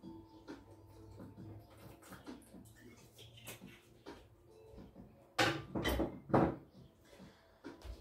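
Faint background music over quiet room tone. A few short, louder noises come about five and a half to six and a half seconds in.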